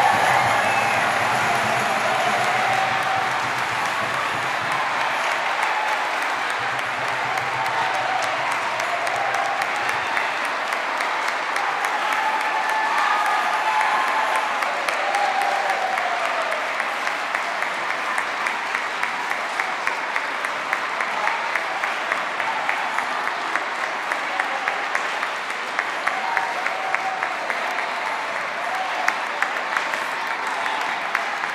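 Church congregation applauding at length in a large reverberant nave, with scattered voices among the clapping. A low sustained musical tone fades out about ten seconds in, and in the second half the clapping falls into a fairly steady rhythm.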